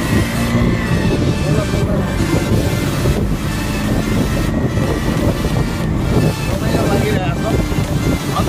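Wind rushing over the microphone of a moving motorcycle, with the bike's engine running underneath, steady throughout.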